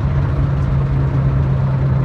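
Engine of a turbocharged Honda GK hatchback droning steadily, heard inside the cabin, at around 4,000 rpm as the car slows from about 130 km/h.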